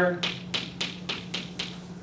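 Chalk tapping against a blackboard as short strokes are written, about six sharp taps over a second and a half, over a steady low hum.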